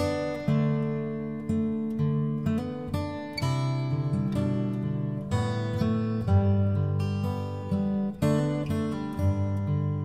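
Instrumental music on acoustic guitar: strummed chords and picked notes that start crisply and ring out, with no singing.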